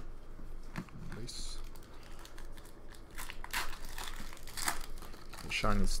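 A stack of 2017-18 Upper Deck Series 1 hockey cards being flipped through one by one by hand: a run of short snaps, slides and rustles of card stock.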